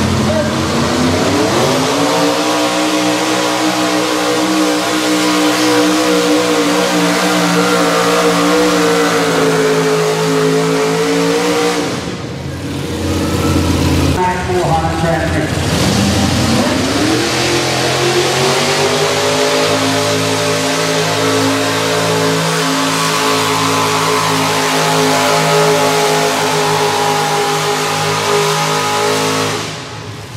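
Econo Rod class pulling tractors under full throttle pulling the sled. The first engine revs up over the first two seconds and holds high, steady revs for about ten seconds. After a break, a second tractor's engine dips, climbs back to high revs and holds until it falls away near the end.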